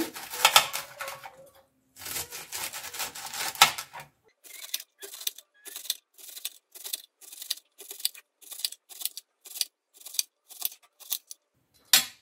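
Chef's knife chopping a bunch of onion flower stalks on a plastic cutting board: a quick run of cuts in the first few seconds, then steady single cuts about three a second, stopping just before the end.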